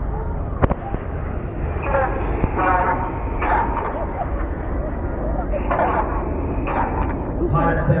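A steady low rumble with one sharp click about half a second in, under snatches of a man's voice over a loudspeaker.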